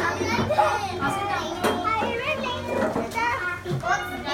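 A group of young children talking and calling out over one another, many high voices overlapping, with a few short clicks among them.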